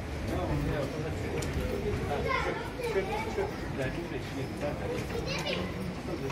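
Several people talking at once, with no single clear voice: indistinct street chatter that carries on steadily.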